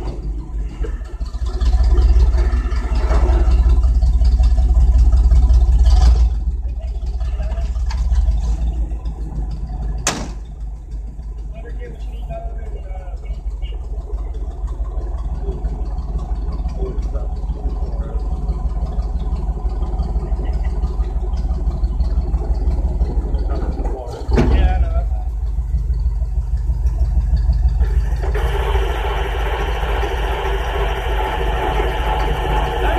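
Tow truck engine idling close by, a low steady rumble that grows louder for a few seconds near the start and again late on, with a few sharp knocks along the way.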